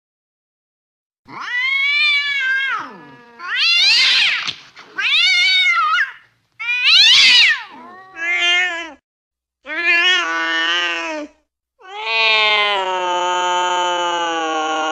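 Cats yowling and caterwauling as in a fight: about seven long, drawn-out calls that rise and fall in pitch, starting about a second in, the last one held longest.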